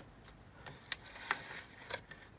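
Quiet room tone with a few faint, short clicks about a second in and near the end.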